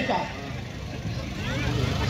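A steady low hum runs under a faint murmur of a crowd of spectators. A man's voice trails off at the start.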